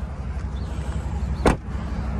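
A single sharp knock from the pickup's cab about one and a half seconds in, over a steady low rumble.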